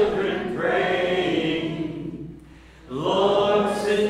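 Church congregation singing a slow worship song, led by men's voices through a sound system, with a short pause between lines about two seconds in.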